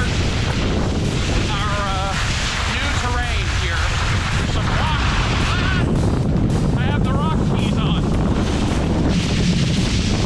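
Steady rush of wind on the camera microphone as a skier moves downhill, mixed with skis scraping over wet, sticky snow.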